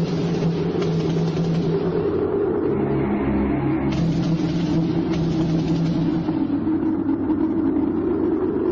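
A loud, steady low drone of held tones that shift in pitch about three seconds in, with a hiss above it that comes and goes.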